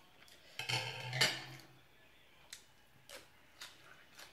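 Fork and spoon scraping and clinking on a plate while eating: a cluster of scrapes about a second in, the loudest, then a few separate light clicks.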